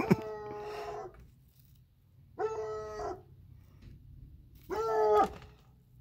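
Dog giving three short howling barks, each under a second long and falling in pitch at its end, with pauses between.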